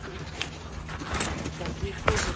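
Snowshoe footsteps crunching in snow, a few separate steps, over a steady low rumble.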